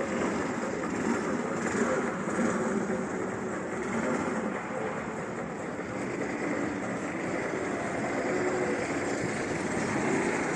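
Go-kart engines running as karts circle the track, the engine note rising and falling.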